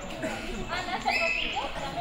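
Indistinct voices of people talking in the background, with a short high-pitched tone that steps up in pitch about a second in.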